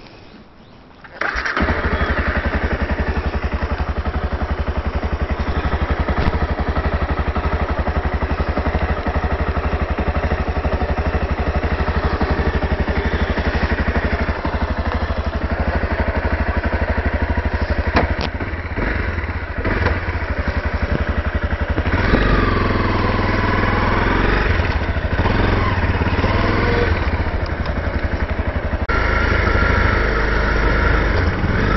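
A 2012 Honda CRF250L's single-cylinder four-stroke engine starts about a second in and then runs steadily at idle. About two-thirds of the way through, its revs begin to rise and fall as the bike pulls away and rides on.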